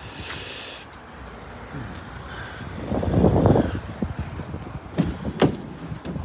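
Rear door of a Vauxhall Vivaro panel van being unlatched and swung open: a clattering clunk about three seconds in, then two sharp clicks a little later.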